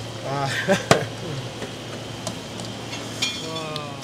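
Hands kneading and slapping ground meat in a stainless-steel bowl, with one sharp knock about a second in and a few lighter ticks. Voices talk briefly near the start and again near the end.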